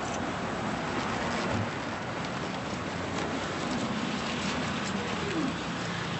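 Footsteps of several people walking briskly on a city sidewalk, over steady outdoor street noise.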